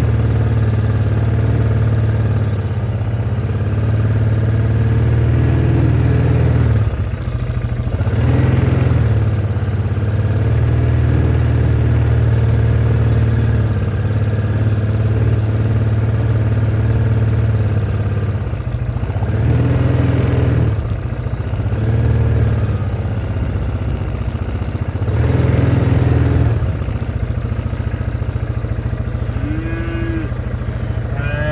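Engine of a slow-moving farm utility vehicle running steadily, swelling in sound three times as it picks up speed among the cattle. A cow begins to moo right at the end.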